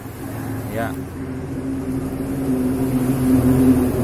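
A steady low motor hum that grows gradually louder, with one short spoken word near the start.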